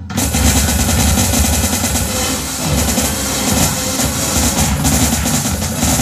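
Live experimental noise-punk music from a quintet of electric guitar, flute, saxophone, drum machine and sampler: a dense, loud wall of noise that cuts in suddenly at the start and buries the drum-machine beat.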